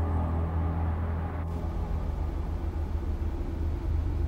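Low, steady background hum and rumble with a faint hiss: an ambient drone in the soundtrack.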